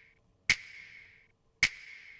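Layered hip hop clap sample played back with its EQ bypassed, unprocessed: two sharp clap hits about a second apart, each with a short bright reverb tail.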